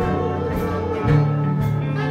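Big band music: held melody notes with vibrato over a sustained bass line, with light cymbal strikes about once a second.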